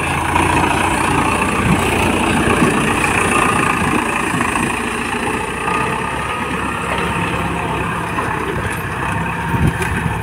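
Farm tractor's diesel engine running steadily under load as it pulls a disc plough through the field.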